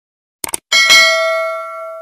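Two quick mouse-click sound effects about half a second in, followed by a bright notification-bell ding that rings out and slowly fades.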